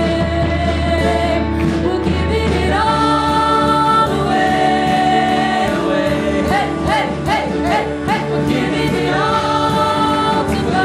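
Live worship band playing a song: male and female singers over acoustic and electric guitars and keyboard, with held notes and vibrato in the voices.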